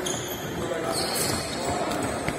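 Basketballs bouncing on a hardwood court, with players' voices in a large, echoing sports hall.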